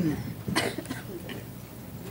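Meeting room with people moving about a conference table: a short cough about half a second in, then faint murmuring voices and small knocks and rustles.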